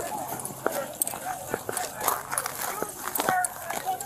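Hurried footsteps of the body-camera wearer on packed snow and pavement: a run of uneven knocks, about two or three a second, with voices faintly behind them.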